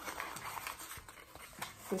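Cardboard mailer box being folded by hand: quiet rustling and scraping, with a few light clicks as a flap is tucked in.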